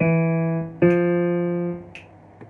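Piano played slowly by a beginner: two single notes struck about a second apart, each ringing and fading before being released.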